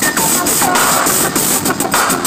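Live electronic music played loud through a concert PA: a dense, gritty noise texture with short downward synth swoops recurring and sharp clicky percussion.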